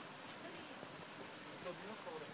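Quiet outdoor background with faint, indistinct distant voices.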